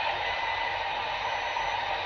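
Steady hiss of cab noise inside a training truck creeping forward.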